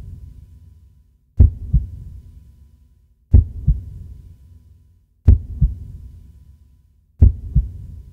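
Slow heartbeat sound effect: four pairs of deep lub-dub thumps about two seconds apart, each pair trailing off in a low rumble.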